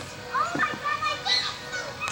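Several short, high-pitched shouts and calls from young voices, overlapping, during an indoor soccer game.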